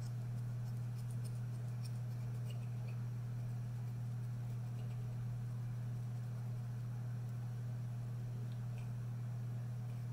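Scattered faint snips of scissors trimming hair, a cluster about a second in and a few more later, over a steady low hum.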